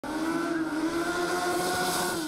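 A race car's engine held at high revs, a steady drone that eases slightly near the end as the car runs through a slalom course.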